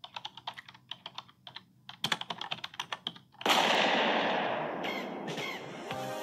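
Intro sound effects for an animated logo: a run of quick, irregular clicks like typing, then about three and a half seconds in a sudden loud rushing burst that slowly fades away.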